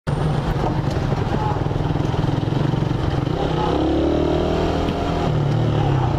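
Suzuki Raider 150R's single-cylinder four-stroke engine running steadily while riding in traffic, heard from the rider's helmet. A higher pitched engine note rises gently in the middle.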